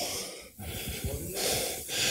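A man's breaths into a close handheld microphone, a couple of noisy swells of air between spoken phrases.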